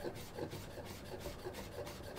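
Chef's knife rocking quickly through stacked carrot slices on a wooden cutting board, making soft, rapid, even strokes as the blade slices the carrot and scrapes the wood.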